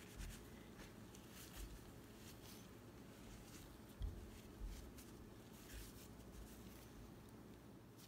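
Faint scratchy rustle of gloved hands rubbing cooking oil into flour in a steel bowl, the crumbing stage of samosa dough, with a soft bump about four seconds in.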